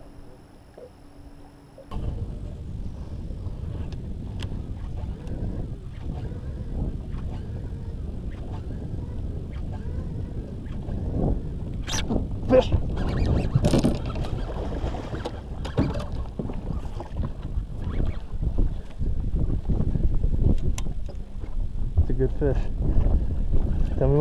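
Low, uneven rumbling of wind on the camera microphone aboard a small boat on open, choppy water. It sets in abruptly about two seconds in, with a few sharp knocks a little past the middle.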